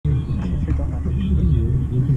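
Indistinct chatter of several voices over a steady low rumble, with no drumming.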